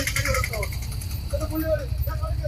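Small motorcycle and autorickshaw engines running in low, pulsing rumbles as they ride slowly over a rough road, with indistinct voices of people nearby.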